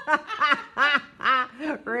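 A woman laughing heartily, a quick run of about five or six high-pitched "ha" bursts.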